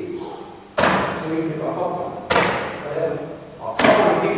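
Three sharp thuds about a second and a half apart, each echoing in a large hall: impacts from a karate pressing drill.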